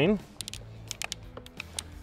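A few faint, scattered clicks and rustles as a small drain hose is handled and pushed onto the drain of a diesel fuel water separator.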